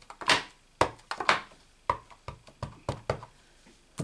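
Clear acrylic stamp block being set down, pressed and lifted on cardstock over a grid mat: a run of irregular light taps and knocks, about a dozen in four seconds.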